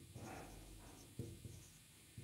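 Faint marker-pen writing on a whiteboard, with a soft knock about a second in.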